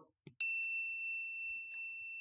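A single bell-like 'correct answer' ding sound effect. It starts suddenly about half a second in and rings on as one clear high tone, fading only slightly.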